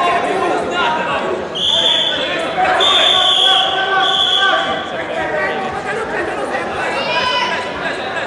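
A referee's whistle blown three times in quick succession, the middle blast the longest, over a background of crowd chatter in a large hall.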